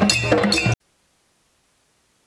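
Hand drums and clinking iron percussion instruments playing a rhythm for a moment, then the sound cuts off suddenly to dead silence less than a second in.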